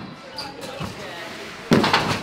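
A trampoline bed bouncing under a jumper, then a loud sudden thud near the end as a body lands flat on a crash mat laid on the trampoline.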